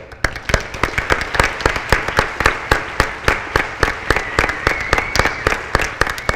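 Audience and panel applauding, with many sharp individual hand claps standing out above the general clapping.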